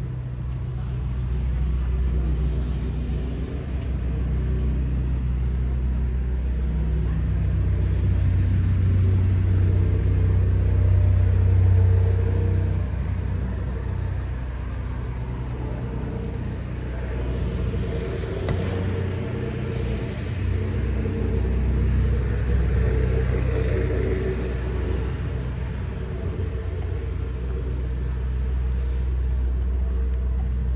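A steady low motor drone that grows louder from about seven seconds in to about twelve seconds in, with a broader rushing swell around eighteen seconds in.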